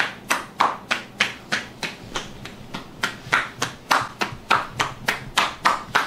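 Massage therapist's hands striking a woman's upper back and shoulders in quick percussive massage (tapotement), slap after slap, about three a second in an even rhythm.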